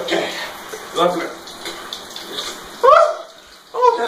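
A man crying out in short 'ah' gasps, four times about a second apart, under a cold shower; the steady spray of the shower water runs between the cries.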